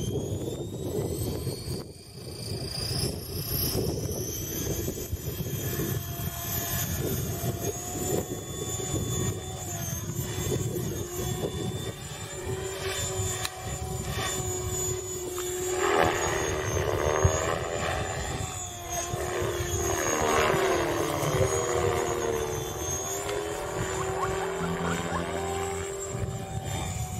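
Align T-Rex 550E electric RC helicopter: the brushless motor and rotor whine rising in pitch as the head spools up over the first few seconds, then holding a steady high whine with rotor noise in flight. Later the pitch bends up and down repeatedly as the helicopter manoeuvres.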